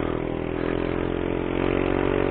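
Motorcycle engine pulling under acceleration, a steady hum that rises slightly in pitch as the bike gathers speed.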